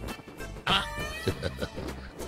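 Film background music with a sudden high, meow-like cry about three-quarters of a second in.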